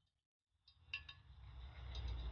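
Wire whisk clinking against the sides of a ceramic bowl as it mixes rice-flour tempura batter: a few light clinks starting about half a second in, then a steady swishing stir.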